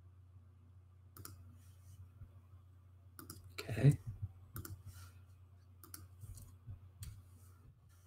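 Scattered clicks from a computer mouse and keyboard while a link is copied and pasted, with one much louder thump just before four seconds in. A low steady hum runs underneath.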